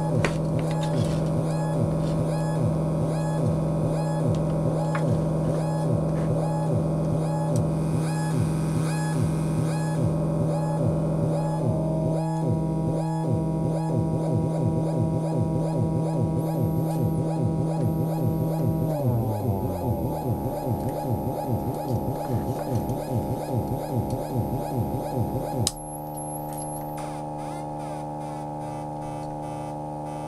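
MFOS Weird Sound Generator, a DIY analogue noise synthesizer, droning with a fast pulsing, stuttering pattern. The tones shift about twelve seconds in, the pitch slides down a little past halfway, and near the end it settles into a steady, quieter hum.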